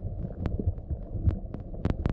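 Muffled underwater sound through a GoPro Hero2's sealed housing: an uneven low rumble and thumping, with scattered sharp clicks, the two loudest near the end.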